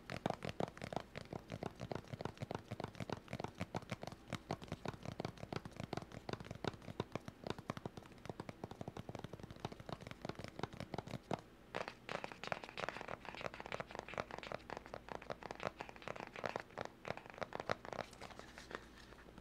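Close-up ASMR tapping and scratching, a fast, irregular run of small clicks and taps. About twelve seconds in, the sound turns brighter and hissier, more like scratching.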